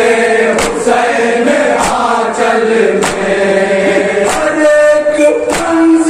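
Men's voices chanting a noha, a Shia Muharram lament, in unison, punctuated by sharp collective chest-beating (matam) strikes about once every 1.2 seconds. Toward the end a single lead voice carries the melody more clearly.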